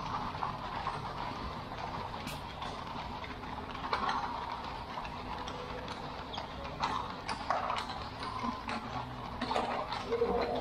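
Horse hooves clip-clopping on cobblestones, in irregular sharp knocks over a steady street hum.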